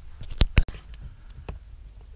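Two sharp knocks close together about half a second in, then a fainter click, over a low rumble: handling noise as the camera is moved around.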